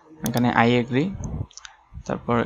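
Computer mouse clicking: two sharp quick clicks about a quarter second in and a couple of fainter ticks past halfway, over a man's brief speech.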